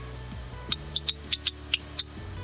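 Plastic sheet-protector pages of a presentation binder being flipped, giving a run of short crisp clicks and crinkles in the second half, over soft background music.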